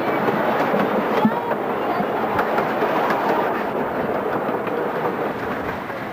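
Hermann Park's miniature train running, a steady clatter of wheels on track heard from on board.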